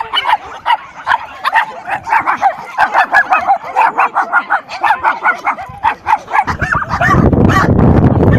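A crowd of kennelled dogs barking and yapping nonstop, several overlapping barks a second. A low rumbling noise joins near the end.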